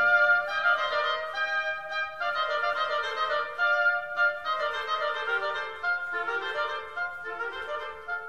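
Eighteenth-century-style classical instrumental music: a passage of high melodic lines in the upper instruments, with the bass parts resting.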